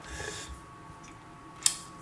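Faint room tone with a thin steady hum, and one short, sharp click about one and a half seconds in.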